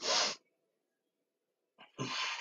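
Two hard exhaled breaths from a man straining through a plank exercise, one right at the start and one near the end, each about half a second long.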